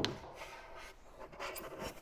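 A sharp metal knock, then rubbing and scraping as a wrench and hose fittings are handled on the hydraulic motor of an auger drive.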